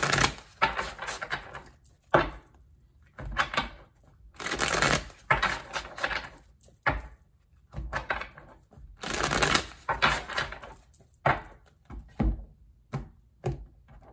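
A deck of tarot cards being shuffled by hand: short bursts of rapid flicking and riffling, about a dozen in all, separated by brief pauses.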